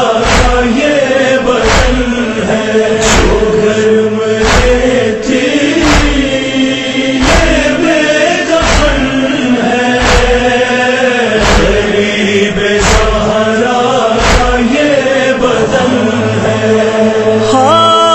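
Voices chanting a noha lament, held and wordless, over a steady low thump about every second and a half. Near the end a single voice with a wavering pitch comes in.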